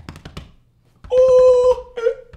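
A man slaps his chest several times in quick succession, then lets out a loud, wordless yell held at one steady pitch for just under a second.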